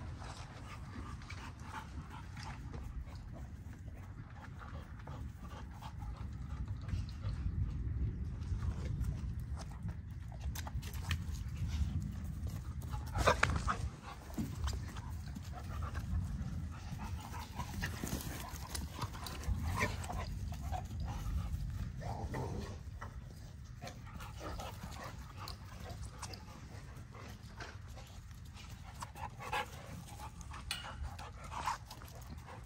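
American bully dogs moving about on grass, panting, with scattered clicks and a brief louder sound a little before halfway, over a steady low rumble.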